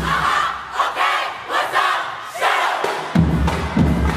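Marching band members shouting a group yell together, several loud shouts in a row while the instruments are silent. About three seconds in, the band's brass and drums come back in.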